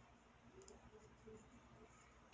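Near silence, with a few faint soft clicks from a metal crochet hook working cotton thread.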